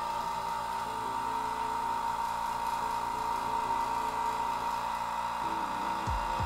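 Vacuum pump running steadily, drawing the air out of an acrylic vacuum chamber as it pumps down.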